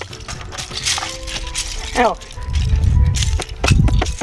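Loose plastic Lego bricks clicking and clattering as they are stepped on and kicked, with background music playing and a low rumble near the end.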